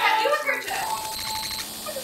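Laughter over a battery-powered novelty gadget playing its electronic tune of short repeating tones.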